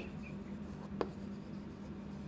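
Chalk writing on a chalkboard: faint scratching strokes, with one sharp tap of the chalk on the board about a second in.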